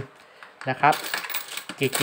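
Thai baht coins clinking against each other and the clear plastic hopper of a homemade coin sorter as a hand stirs and spreads them out, since the coins sometimes stick together.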